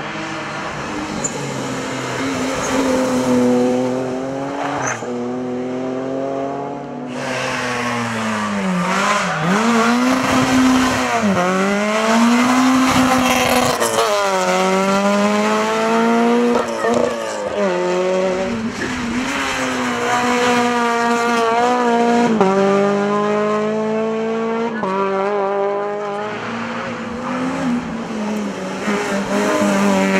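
Rally car engines at full throttle on a hillclimb, one car after another. Each engine climbs in pitch and then drops sharply as it shifts gear or lifts for a bend, over and over.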